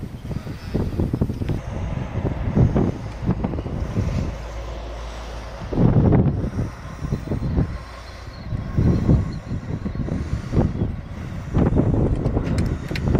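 Wind buffeting the microphone outdoors in uneven low gusts and rumbles, loudest about six seconds in and again near the end.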